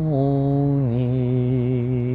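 A man's voice singing a slow devotional chant. He holds one long note, then drops to a lower note just under a second in and holds that steadily.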